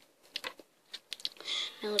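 A scattered series of quick, light clicks and taps from small objects being handled, followed near the end by a boy starting to speak.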